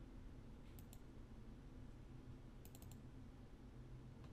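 Faint computer mouse clicks over a low steady room hum: two close together about a second in, then a quick run of about four near three seconds, as folders are opened in a file dialog.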